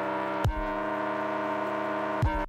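Live-coded electronic music from TidalCycles: a sustained, brassy synthesized chord held steady, with one deep drum hit about half a second in.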